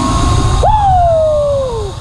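Zip line trolley whining along its steel cable over wind rumble; the whine jumps up in pitch about half a second in, then slides steadily down over a little more than a second.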